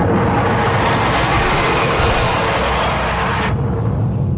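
A loud dramatic sound effect that comes in suddenly as a dense rumbling noise with a thin high whistle over it. The upper part cuts off about three and a half seconds in, leaving a low rumble that fades.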